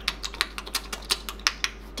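A quick, even run of light taps or clicks, about five to six a second, used as a sound effect for the rabbit scurrying to the water hole.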